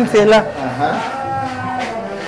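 A person's voice: a few quick syllables, then one long, steady, held vocal tone lasting about a second and a half.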